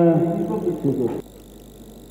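A man's voice trailing off on a drawn-out word for about the first second, then cutting off to a steady low background hum.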